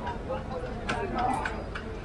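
Street crowd ambience: people talking over a low background rumble, with a few sharp clicks or taps about halfway through.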